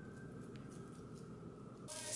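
Quiet room tone with a faint steady high-pitched tone; right at the end, black bean burger patties start sizzling in a frying pan.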